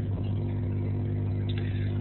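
A steady low hum, made of several even tones, runs unchanged through a pause in the talk.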